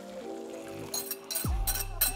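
Background music: held chords, with a deep bass note coming in about three-quarters of the way through.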